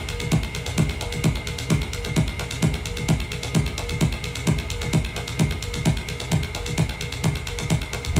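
Techno played live on electronic gear: a steady kick drum a little over twice a second under fast, clicking hi-hat ticks and a held high tone.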